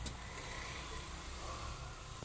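Steady low background rumble, with one sharp click right at the start.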